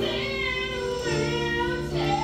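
A woman singing a show tune with instrumental accompaniment, holding one note and then moving to another about a second in.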